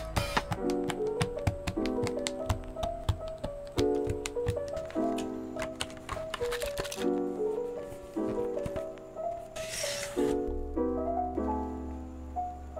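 Background music with soft piano-like chords. Over it runs a stream of sharp key clicks from a mechanical keyboard being typed on: a Rakk Pirah fitted with lubed Akko Jelly Black linear switches, called creamy and thocky. A brief hiss comes near the end.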